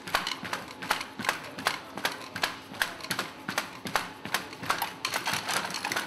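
Boston Dynamics BigDog quadruped robot with its manipulator arm, stepping about on a concrete floor: a fast, irregular clatter of sharp clicks and knocks, several a second, from its feet and actuators, over a faint steady hum.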